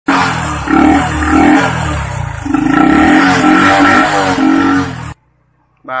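A loud motorcycle engine revving repeatedly, with music mixed in, cutting off abruptly about five seconds in.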